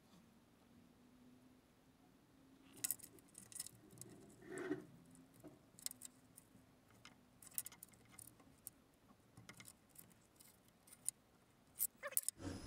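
Faint clicks and snips of a pair of multi-tool pliers working a thin electrical wire, stripping it and fitting a connector, scattered irregularly from about three seconds in.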